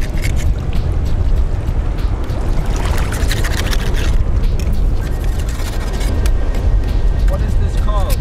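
Loud, uneven low rumble of wind buffeting the microphone, with scattered clicks and rustles.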